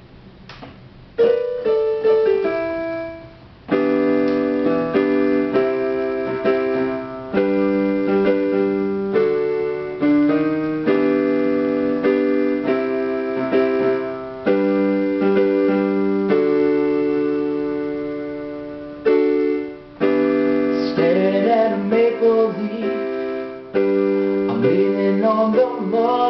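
Piano chords played on a digital keyboard as a song's intro. A short falling run opens it, then slow held chords change every second or two. A man's voice starts singing over them in the last few seconds.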